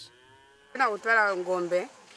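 Cattle mooing: a faint moo at the start, then a louder moo lasting about a second from just under a second in.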